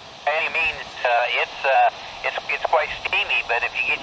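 Another ham operator's voice heard through a Yaesu handheld transceiver's speaker, thin and tinny with the lows and highs cut away, over a faint hiss.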